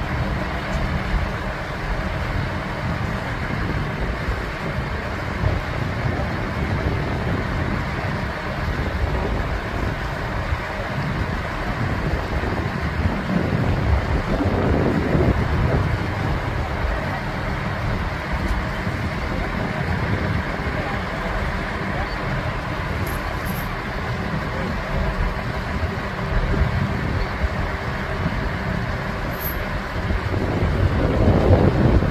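Large mobile crane's diesel engine running steadily, a low continuous rumble with gusts of wind noise on the microphone.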